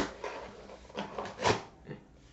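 Cardboard book mailer being ripped open by hand: several short tearing bursts as the lid flap comes away, the loudest about one and a half seconds in.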